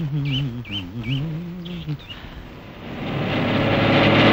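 Birds chirping in a quick series, a short call repeated about three times a second, over a lower wavering tone. From about three seconds in, a truck engine grows louder as it approaches.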